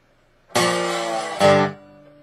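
Acoustic guitar in open G tuning played with a metal slide, repeating the song's opening riff. A full chord is struck about half a second in and held. Near the end a second, lower strike on the bass strings dies away quickly, leaving one note ringing faintly.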